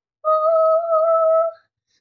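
A girl humming one steady, high note for about a second and a half, with a slight waver in pitch.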